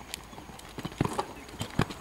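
Hoofbeats of a horse cantering on a sand arena: soft, unevenly spaced thuds, the loudest about a second in and just before the end.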